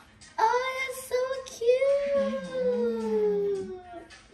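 A high-pitched voice singing without clear words: a few short rising notes, then one long note that slides slowly down in pitch. A lower voice hums along for about a second and a half in the middle.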